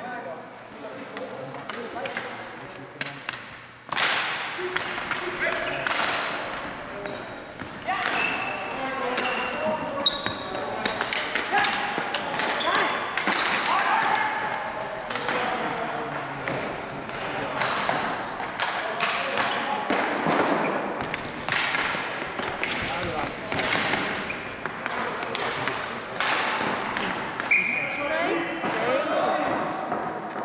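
Ball hockey play on a gym's wooden floor: frequent sharp clacks and knocks of sticks hitting the ball and floor, with short high squeaks and players calling out, all echoing in the hall. It is quieter for the first few seconds, then busier, with one especially sharp crack about ten seconds in.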